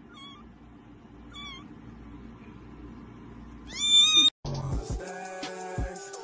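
Three short, wavering cat-like meows: two faint ones in the first second and a half, then a louder, rising one about four seconds in. After a brief gap, music starts.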